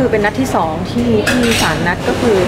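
Dishes and cutlery clinking in short, sharp clicks, with a woman's voice talking over them.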